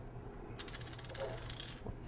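Small hard objects handled on a metal optical table: a quick run of fine, rapid clicks and rattles lasting about a second, as the can of compressed air and the camera are picked up.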